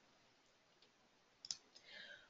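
Near silence, broken by a single sharp computer-mouse click about one and a half seconds in, advancing the presentation slide.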